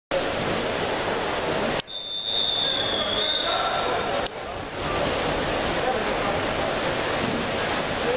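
Steady hall noise of an indoor swimming pool, with a long, steady high whistle of about two seconds starting about two seconds in: a referee's long whistle, the signal that calls backstroke swimmers into the water.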